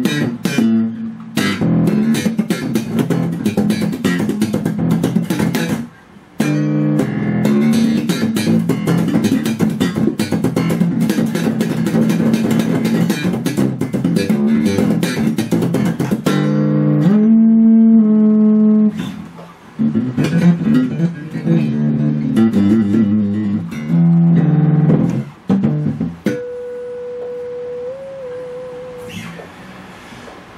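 Freshly strung electric bass guitar played solo with a nasal tone: quick lines with many sharp, percussive string attacks, a few held notes past the middle, and one long sustained note with a slight bend near the end.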